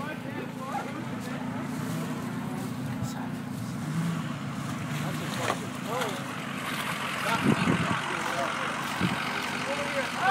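Ford F-250 diesel pickup's engine running at low revs, a steady low drone, as the truck backs slowly through mud.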